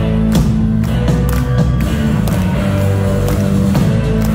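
Live rock band playing, recorded from among the crowd: drums, bass guitar and electric guitar, with a strong steady bass and regular drum hits.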